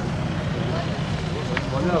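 Outdoor crowd ambience: a steady low rumble with voices, and a man's voice starting to recite in Arabic near the end.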